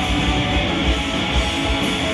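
Live loud rock band: a dense wall of heavily distorted electric guitars over a steady low drum beat of about two hits a second.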